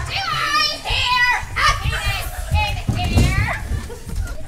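Several young girls' voices shouting and calling out excitedly, with no music under them.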